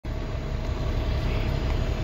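Steady low rumble with a faint hum over it.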